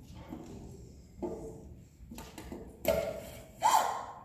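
A few short, quiet voice sounds with pauses between them, the loudest near the end.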